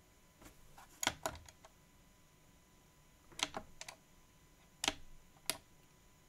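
Plastic menu buttons on a Jumper T12 radio transmitter being pressed: a few quick clicks about a second in, another group around three and a half seconds, and two more near the end.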